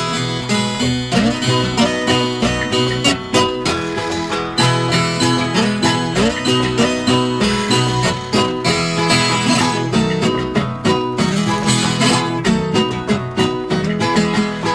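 Instrumental introduction of a sertanejo caipira cateretê recording: viola caipira and guitar strumming and picking a quick, even rhythm.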